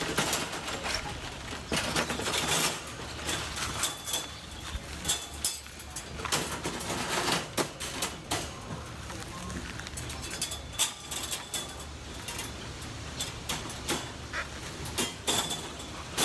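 Folding wire dog crate being unfolded by hand: its wire panels rattle and clank irregularly as they are swung up and set in place.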